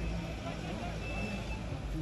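Engines of two SUVs running as they drive slowly over a dirt field, a steady low rumble.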